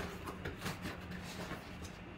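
Lid of a cardboard box being lifted off its base: a few soft, brief scrapes and rustles of cardboard.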